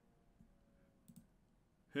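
Very quiet room tone with a single faint click a little over a second in.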